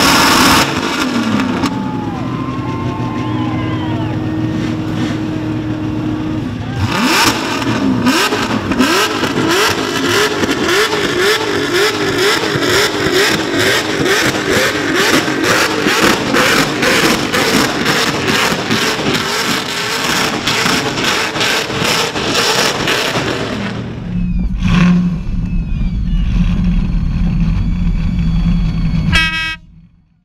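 Supercharged LS1 V8 of a burnout truck held at high revs through a burnout, a hard, rapidly pulsing engine note whose pitch wavers up and down, starting about seven seconds in and easing off after about twenty-three seconds. Near the end a steadier low engine note takes over, then the sound cuts off.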